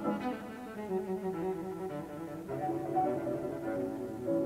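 Recorded chamber music: the trio section of a scherzo, with cello and other strings playing quick, rapidly repeated figures.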